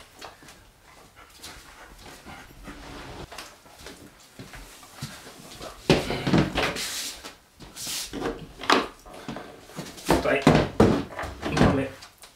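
A German Shepherd puppy whimpering and whining in short bursts from about halfway through, the loudest sounds here, with a few knocks of gear being handled.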